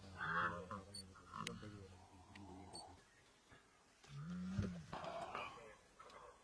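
Low distress calls from a young hippo under attack by spotted hyenas. There are short calls in the first second or so, then one drawn-out call about four seconds in that rises and falls in pitch.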